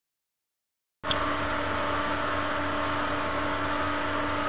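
Steady electrical hum and hiss with a few held tones from running HHO electrolysis equipment, a dry cell drawing about 21 amps through a PWM controller. It starts suddenly about a second in, after silence.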